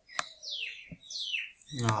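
A bird calls twice, two short chirps falling in pitch, just after a single click.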